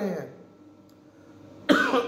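A man coughs once, sudden and loud, near the end, after a short quiet pause in his talking.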